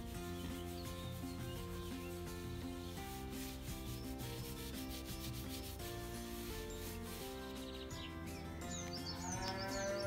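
Gloved hands scratching and rubbing a pig's hide, under soft background music of held chords that change every second or two.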